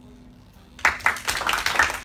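Classmates applauding: a small group of people clapping, starting suddenly just under a second in.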